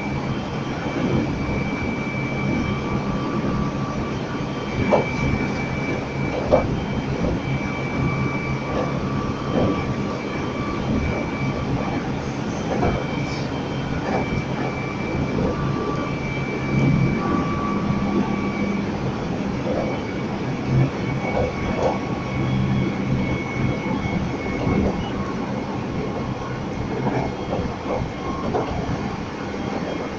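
Meitetsu express electric train running at a steady speed, heard at the coupling between two units: a steady whine at a few pitches over the running noise, with scattered clicks and knocks from the running gear.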